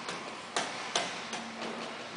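A few separate light clicks or taps, roughly one every half second, with a faint steady low hum in the last half second.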